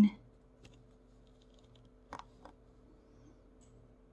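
A few faint, short clicks of metal tweezers picking at the resin drills of a diamond painting, two of them close together about two seconds in.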